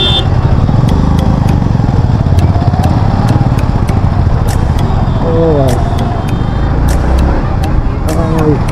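Yamaha MT-15 motorcycle's single-cylinder engine running at low speed, a steady low rumble throughout. Brief voices of people cut in twice, around the middle.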